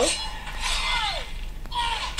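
Soundtrack of the animated episode: a sudden hit-like sound at the start, then a tone gliding down in pitch about a second in, with a short cartoon sound or voice near the end.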